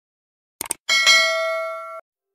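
A short click, then a bell-like ding about a second in that rings on and fades slowly: the notification-bell sound effect of a subscribe animation.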